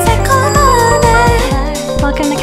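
Pop music: a sung lead vocal line over a steady drum beat and bass.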